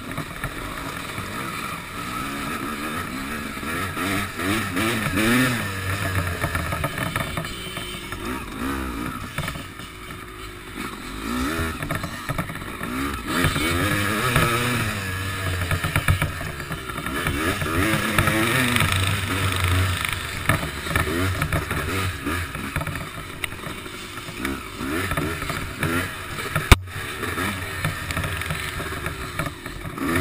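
Honda CR250 two-stroke motocross engine revving up and falling back again and again as the bike is ridden over the course, with wind noise on the helmet-camera microphone. A single sharp crack comes near the end.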